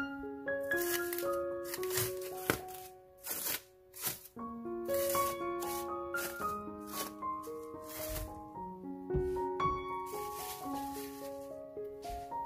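Light background music, a melody of short held notes. Over it come intermittent crinkles of plastic cling wrap being peeled off a ball of pastry dough.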